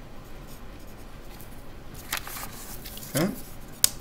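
Pencil lead scratching on graph paper as a line is drawn, over the steady hum of an air circulator, with a sharp click near the end.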